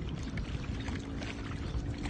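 Steady rushing noise of a wide river flowing past the bank, mixed with wind on the microphone, with a faint steady hum underneath.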